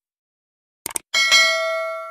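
Two quick click sound effects just before a second in, then a bright notification-bell ding that rings on and slowly fades. This is the stock sound of a subscribe-button animation reaching the notification bell.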